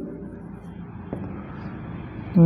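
Steady background noise with a low rumble, and a faint tick about a second in.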